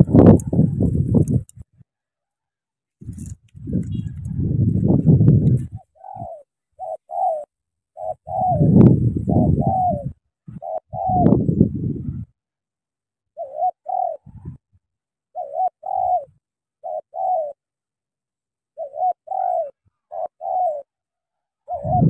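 Spotted doves cooing in short repeated phrases, groups of two to four notes coming again and again, from a caged decoy dove and a wild dove beside the snare. In the first half, several loud low rumbling bursts of a second or two each stand out above the coos.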